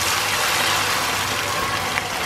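A steady stream of water poured into a hot pan of butter-toasted rice for pilaf, hissing and sizzling as it hits the hot fat.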